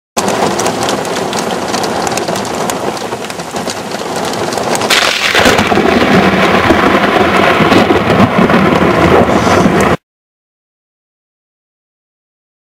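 Heavy rain falls, and about halfway through a close thunderclap cracks and rumbles loudly over it. The sound cuts off suddenly, leaving silence for the last couple of seconds.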